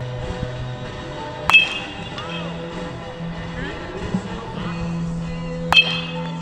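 A baseball bat hitting pitched balls in batting practice: two sharp cracks about four seconds apart, each with a brief high ringing. Background music plays under them.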